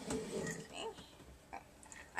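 A woman's low, wordless grunt that fades out within the first second.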